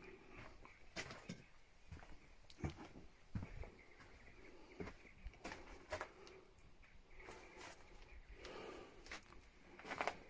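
Faint footsteps and scuffs on rubble and stone floor, with a scatter of short, irregular knocks.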